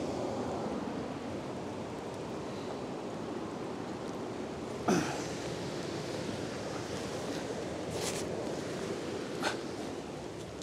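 Steady rush of a river pouring over a weir, heard from the bank, with a few short knocks and scuffs about halfway through and near the end as someone clambers up the muddy bank.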